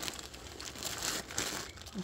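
Clear plastic bag of dried lentils crinkling and rustling as it is handled, with a run of irregular small crackles.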